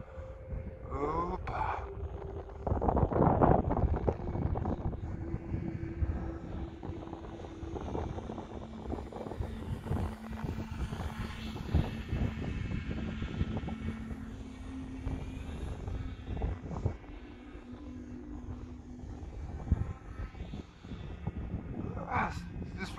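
Small electric RC-plane motor and propeller heard from a distance as the glider flies overhead, a steady hum whose pitch drops about a third of the way in. Gusts of wind rumble on the microphone, loudest about three seconds in.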